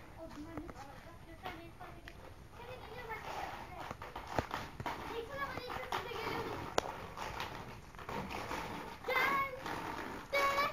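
Faint children's voices and chatter, with a child's voice coming through more clearly near the end. Two sharp clicks stand out, a couple of seconds apart.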